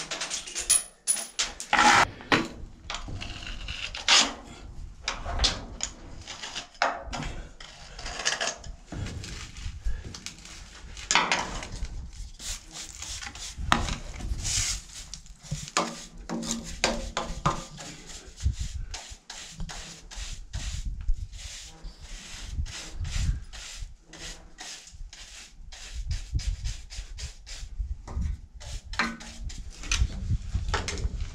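Hand scraping and brushing of gravel, rust and dirt out of the cracks of a steel trommel screen, a dustpan and small tool rasping on the metal in quick, irregular strokes.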